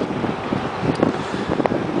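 Wind buffeting the microphone while riding along, an uneven rushing and rumbling noise.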